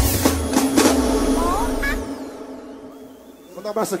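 A live pagodão band plays the final hit of a song, which rings out, and the low bass and drums stop about two seconds in. A high falling sweep fades away in the tail, and a man's voice starts on the microphone near the end.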